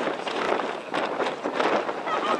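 Gusty wind noise on the camera microphone, surging unevenly.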